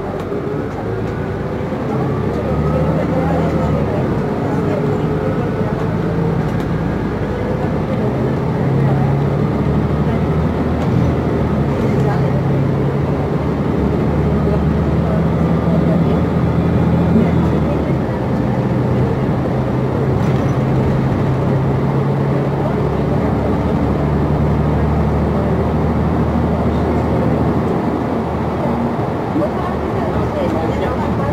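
Cabin sound of a New Flyer XN60 articulated natural-gas bus on the move: a steady engine hum with a rising whine over the first several seconds as it gathers speed. The engine note then steps several times as it cruises on.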